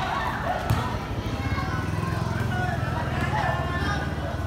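Crowd of basketball spectators, a steady murmur of many voices over a low steady hum, with a single sharp knock under a second in.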